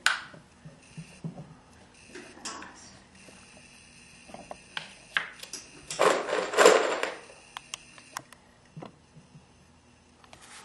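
Scattered light clicks and knocks of pegs being handled and put into a pegboard, with a louder rustling burst lasting about a second around six seconds in.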